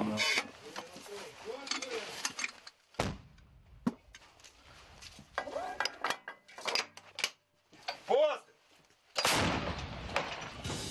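Sounds of a 105 mm howitzer crew at work: a sharp bang about three seconds in, metal clinks as a brass shell case is loaded into the breech, a short shout, then a loud gun blast near the end.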